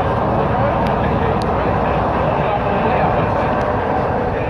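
Leyland Titan PD2 double-decker bus's six-cylinder diesel engine running steadily under way, heard on board, with a few light rattles from the body.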